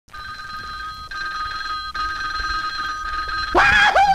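Cartoon telephone ringing with a steady two-tone ring, broken into a few stretches. About three and a half seconds in, a loud yelling voice cuts in, its pitch swooping up and then falling, louder than the ring.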